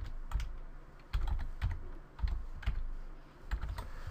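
Computer keyboard being typed on: a run of irregular keystrokes with short pauses between them, as a short file name is entered.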